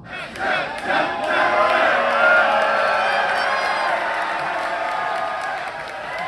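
Concert crowd cheering and shouting, many voices together with individual whoops on top, swelling about a second in and staying loud.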